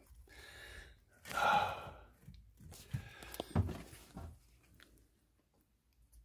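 A breathy exhale from a person about a second and a half in, followed by a few faint clicks and soft knocks.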